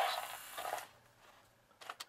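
Hiss of a toy battery record player fading out as its recorded announcement ends, then near silence, then a few sharp plastic clicks near the end as the white lever on the red Mattel sportscaster voice unit is pressed.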